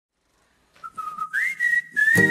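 A whistled melody begins about three-quarters of a second in: a single clear note held, then sliding up to a higher held note, the opening of a recorded pop song.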